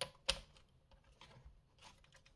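A laptop RAM module (8GB Goodram DDR3L SO-DIMM) being pressed down into its slot: two sharp clicks in the first third of a second as it seats and the slot's side latches snap shut, then a few faint taps.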